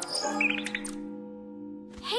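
A cartoon bird chirping: a quick run of about five short, high chirps about half a second in, over a soft held music chord that slowly fades.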